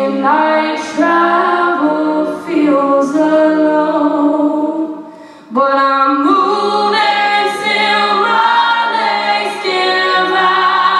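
Women's a cappella ensemble singing sustained, close-harmony chords with a lead voice on top, voices only, no instruments. The sound thins out a little before halfway and the full group swells back in on a new chord.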